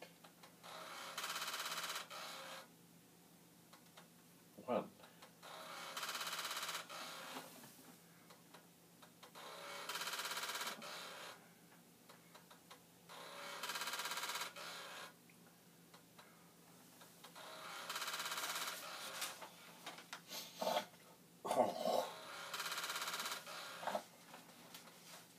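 Commodore floppy disk drive mechanism buzzing and rattling in six bursts of about a second and a half, roughly every four seconds, as a program makes it retry initializing the disk over and over. The drive is failing to read the disk.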